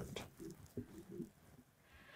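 A pause in conversation filled by a few faint, short, low murmured vocal sounds in the first half, then near silence.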